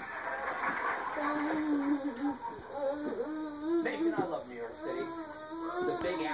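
A toddler whimpering and crying, in long drawn-out notes that waver up and down, starting about a second in.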